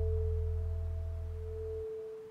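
Meditation music: a steady pure tone near 432 Hz with a low drone beneath it, slowly fading out.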